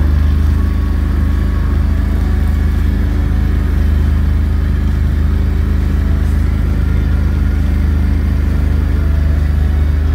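Engine of an amphibious ATV running steadily while driving, a constant low drone with no change in pitch.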